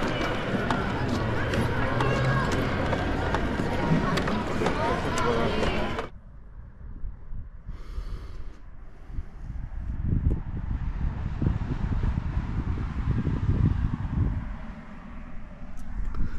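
Busy outdoor background with indistinct voices for about six seconds, then an abrupt cut to a much quieter stretch of low, uneven rumbling on the camera's microphone.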